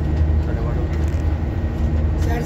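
Steady low rumble of a coach bus's engine and road noise, heard from inside the cabin.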